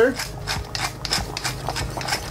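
Light, rhythmic scraping and clicking, about four strokes a second, as pepper is ground over a white sauce and a wire whisk begins stirring it in a stainless steel saucepan.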